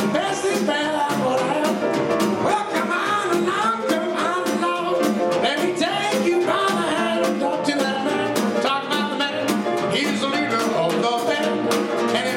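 Live jazz trio of grand piano, flute and drum kit playing an upbeat ragtime song, the drums keeping a quick, even beat.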